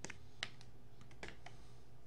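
A few light, sharp clicks, irregularly spaced and bunched together about a second in, over a faint steady low hum.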